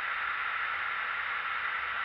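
Steady airflow hiss in a Boeing 777 cockpit with the aircraft powered up on its APU, from the air-conditioning and equipment-cooling fans.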